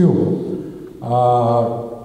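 A man's drawn-out hesitation sound, a single vowel held at a steady pitch for just under a second, in a pause mid-sentence while speaking into a microphone.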